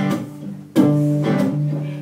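Acoustic guitar strummed live, chords ringing between sung lines. There is a light strum at the start and a strong strum about three quarters of a second in.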